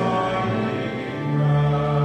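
Church organ playing sustained hymn chords, with a congregation singing along; the chord shifts in the first second and a half, then settles into held notes.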